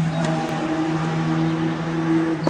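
A steady, low mechanical hum holding an even pitch, with a faint click about a quarter second in.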